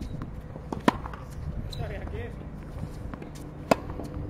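Tennis racket striking a ball: two sharp hits about three seconds apart, during forehand practice on a hard court.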